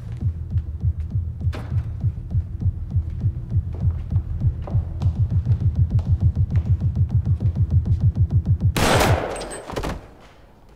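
Film sound design: a low throbbing pulse over a steady hum, quickening steadily like a racing heartbeat. About nine seconds in, a sudden loud crash-like burst cuts it off.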